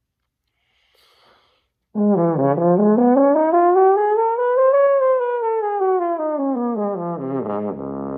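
French horn playing a slurred flexibility exercise in eighth notes, taken slowly. After a short breath it climbs note by note to a high note about halfway through, comes back down, and settles on a held low note near the end.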